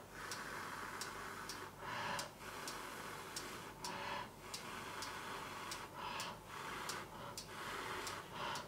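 Rapid, even ticking, about two to three ticks a second, over a hiss that swells and drops every second or two.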